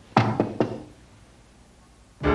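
Three quick knocks on a door, all within about half a second near the start.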